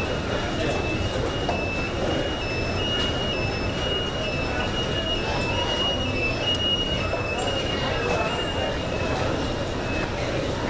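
Busy airport terminal hubbub: many people talking at a distance, with rolling luggage and footsteps, under a thin, high-pitched electronic tone that keeps switching between two close pitches about every half second.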